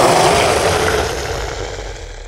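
Edited-in sound effect: a loud rushing noise with a low rumble that fades away over about two seconds.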